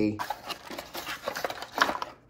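A small cardboard box handled on a wooden tabletop as a ground bus bar is slid out of it: light scraping of cardboard and a few small knocks, the sharpest near the end.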